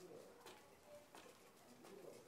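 Near silence, with a few faint soft ticks.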